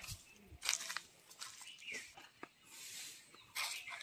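Faint, irregular rustling and crackling of grass, leaves and dry litter as someone walks through garden undergrowth.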